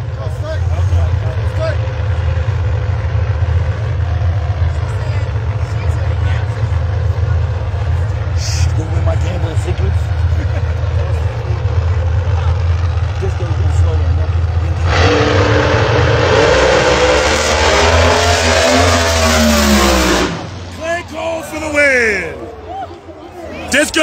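No-prep drag cars' engines rumbling low and steady, then a loud full-throttle pass starts about fifteen seconds in and lasts about five seconds, its pitch falling before it cuts off suddenly.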